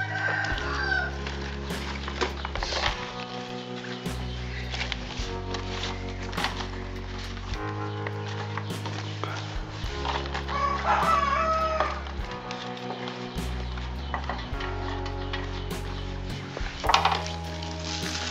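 A rooster crowing, one long crow about ten seconds in and a shorter call near the start, over background music with a steady bass line. Light rustles and clicks of leaves being handled.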